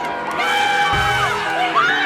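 A group of people cheering and shouting in celebration, with a long held shout, over background music.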